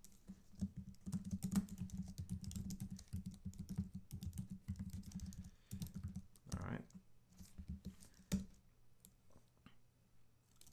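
Typing on a computer keyboard: a fast, dense run of keystrokes for about six seconds, thinning to a few scattered key presses near the end.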